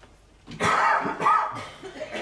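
A person coughing twice to clear their throat, starting about half a second in.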